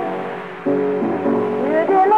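Old country blues recording: guitar accompaniment with a woman's voice holding notes and sliding up into the next phrase near the end.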